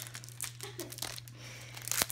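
Clear packing tape and its dispenser being handled as the tape is fed through the dispenser, with scattered crinkles and small clicks of the plastic tape film.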